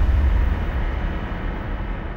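Deep, noisy rumble of a trailer's closing sound effect, the tail of a boom hit, slowly fading out.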